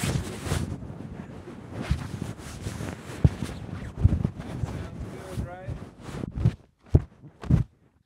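Shirt fabric rubbed and pressed against a studio microphone: irregular rustling and muffled knocks of handling noise, ending in a few separate louder knocks.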